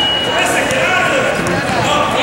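Indoor basketball game: indistinct voices of players and spectators calling out in an echoing gym, with a basketball being dribbled and scattered short knocks from the court. A steady high tone stops about half a second in.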